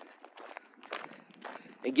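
Footsteps of a person walking on a gravel and dirt road: a string of irregular short scuffs.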